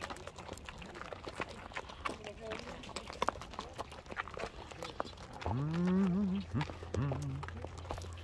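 Hooves of several horses walking on a dirt road, irregular clopping steps throughout. A voice calls out briefly about five and a half seconds in.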